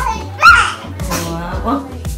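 A toddler's loud, high-pitched vocal cry about half a second in, followed by more wordless vocalizing, over background music with a steady beat.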